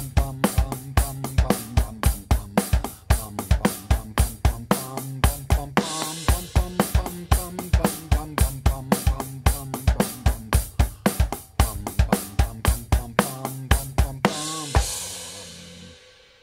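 Electronic drum kit playing a rock groove: steady eighth-note hi-hat, snare on two and four, and syncopated bass drum notes falling between the hi-hat strokes. Near the end the groove stops on a cymbal crash that rings out and fades.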